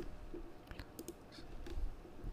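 Several faint, scattered clicks from a computer keyboard and mouse in use, against a quiet room background.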